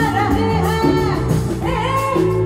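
A boy singing a Hindi film song into a microphone over a live band with keyboard and hand drums, heard through the stage sound system.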